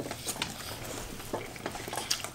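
Two people biting into and chewing burgers close to the microphone: scattered soft, wet mouth clicks and smacks.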